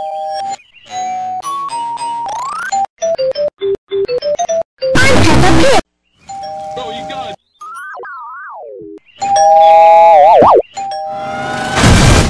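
A two-tone ding-dong doorbell chime, chopped and stuttered into rapid repeats, pitch-shifted up and down and warped into a zigzag warble, with two loud harsh bursts cut in; the plain ding-dong returns near the end.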